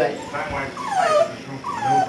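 Eight-week-old puppy whining: two high whimpers, each sliding down in pitch, one near the middle and one near the end.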